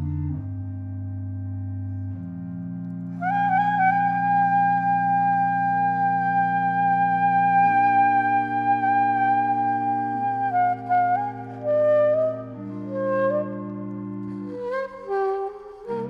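Organ and saxophone duet: sustained low organ chords that change every few seconds, with the saxophone coming in about three seconds in on a long held high note, then stepping down through shorter notes in the last few seconds.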